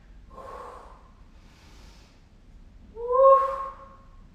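A woman breathing with effort through exercise reps: a breathy exhale, a faint inhale, then a louder, steady-pitched voiced exhale about three seconds in.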